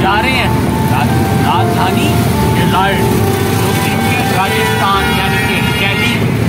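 Auto-rickshaw engine and road noise during a ride, a steady rumble, with a man's voice talking over it.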